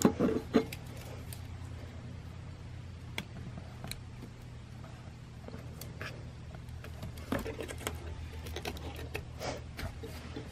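Hands working at a wiring splice: a clatter of a folding metal multitool being picked up right at the start, then scattered small clicks and rustles of a wire and plastic connector being handled, with another run of clicks near the end. A steady low hum lies underneath.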